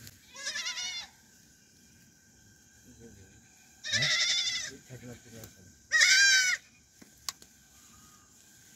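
A goat bleating three times, each call a short quavering cry under a second long, with pauses of a few seconds between; a single sharp click near the end.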